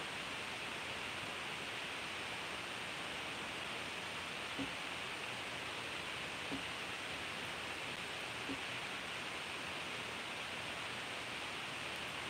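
Steady background hiss of room tone, with three faint ticks about two seconds apart.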